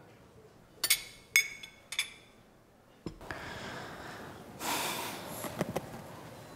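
Three short, ringing clinks, about half a second apart. Then a steady room hiss begins suddenly, with a brief rushing noise and a few soft clicks near the end.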